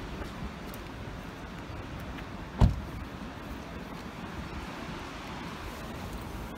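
Steady low outdoor rumble of wind and traffic noise, with one sharp thump a little under halfway through.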